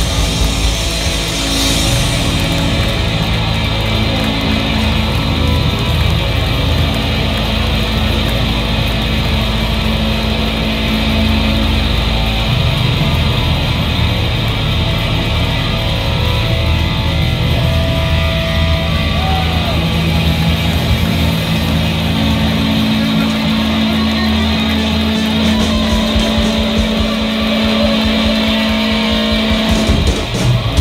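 Live garage rock band playing loud: electric guitars, bass and drums, heard from within the crowd.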